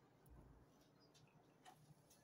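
Near silence inside a lift car: a faint low hum with a few soft, scattered clicks.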